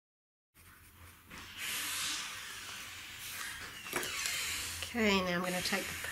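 Coloured pencil shading on paper: a steady scratchy hiss lasting a couple of seconds, then a sharp click near the end as the pencil is set down, followed by a woman's voice.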